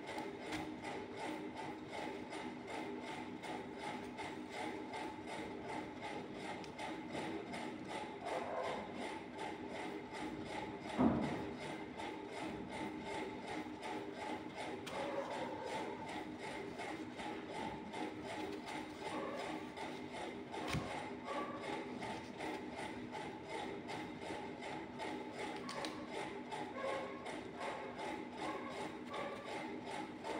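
A steady mechanical whirring hum from a small motor, with a fast, fine rattle running through it. One thump comes about eleven seconds in and a sharp click around twenty-one seconds.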